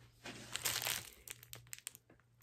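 Crinkling, rustling handling noise as things on a paper-covered work table are moved, followed by a quick run of small sharp clicks near the end.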